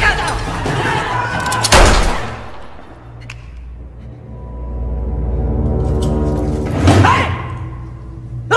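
Action-film soundtrack: tense score with a loud sharp impact hit about two seconds in. A low rumbling swell with long held tones builds after it, and another hit comes near the end.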